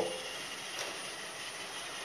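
Roomba robot vacuum's drive wheel motors running as it rolls forward across a tile floor on a DTMF-decoded phone command. The sound is a steady whir with a faint high whine.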